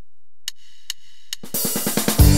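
Drum track of a Yamaha PSR-S950 arranger keyboard's country style starting up: three evenly spaced clicks counting in, then a drum fill from about a second and a half in, leading into the full band accompaniment.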